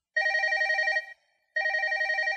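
Electronic telephone ringing: two trilling rings of just under a second each, the second beginning about a second and a half in.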